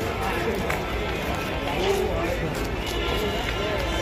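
Indistinct voices of a group of people chattering as they walk, with footsteps on a paved path and a steady low rumble from the handheld camera moving along.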